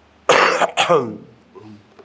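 A man coughing twice in quick succession into his hand, close to the microphone.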